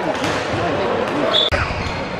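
Handball bouncing on a sports-hall court floor amid shouting voices of players and onlookers, with a few sharp knocks and a brief high squeak about one and a half seconds in.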